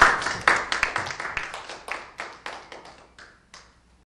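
A small audience clapping. The claps thin out and die away over about three and a half seconds.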